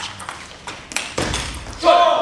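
Table tennis rally: a celluloid ball ticking sharply off bats and table, several quick hits with echo from a large hall. Near the end a loud shout cuts in as the rally ends.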